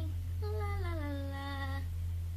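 A girl's voice holding one long wordless sung note that slides down in pitch, from about half a second in until near the end, over a steady low hum.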